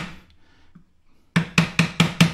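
Light taps of a small steel pry bar on a heated low-grade silver coin laid on a pine board, straightening the bent coin. An ordinary kitchen table and the loose things on it resonate with each tap, which makes it sound harder than it is. One tap, a pause of about a second, then a quick run of about four taps a second near the end.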